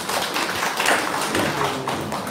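A small audience applauding, with hand claps close by.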